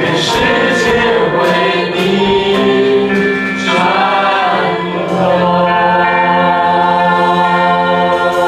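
Church worship band and congregation singing a Mandarin praise song, with cymbal-like percussion strokes in the first few seconds, then a long held note and chord from about five seconds in.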